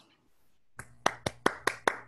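One person's hands clapping, heard through a video-call microphone: about six claps at roughly five a second, starting about a second in, over a faint steady hum.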